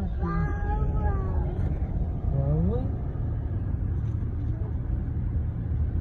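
Steady low rumble of a car driving, heard from inside the cabin. Two short, pitched, voice-like calls sound over it in the first three seconds, the second one rising.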